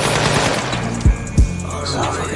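Automatic rifle fire from a film scene, a dense rattle that fades out over the first half second or so, mixed over a music track; about a second in, two heavy bass-drum thumps land and a low bass note holds.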